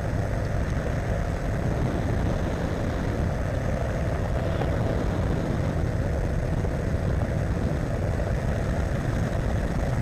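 Weight-shift ultralight trike's engine and pusher propeller running steadily in cruise flight, heard from just behind the propeller, with a heavy low rumble and no change in pitch.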